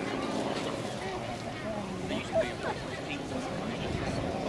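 Distant Rolls-Royce Merlin V12 engine of a Hawker Hurricane droning steadily in flight, heard under the chatter of nearby spectators, with one brief louder voice about halfway through.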